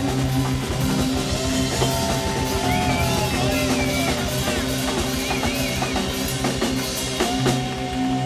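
A live rock band playing a song, led by a drum kit and electric guitar, loud and steady throughout.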